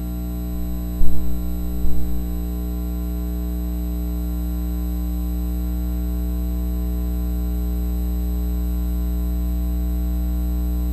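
Steady electrical hum with a buzzy stack of overtones, as from a ground loop or an unconnected amplified audio line, growing slightly louder. A few sharp clicks and knocks come about one and two seconds in.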